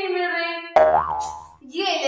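A held pitched voice-like sound. Then, about three-quarters of a second in, a sudden twanging comedy 'boing' sound effect with a quick rise and fall in pitch, which dies away before voices return near the end.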